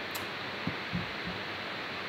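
Steady background hiss of a recording microphone, with a faint click just after the start and a few soft low thumps around the middle.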